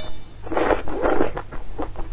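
Noodles being slurped up out of broth: one long sucking slurp about half a second in, followed by soft, quick, wet mouth clicks of chewing.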